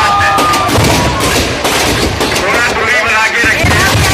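Firecrackers packed inside a burning Ravan effigy going off in rapid, irregular cracks and bangs, with a large crowd's voices shouting over them.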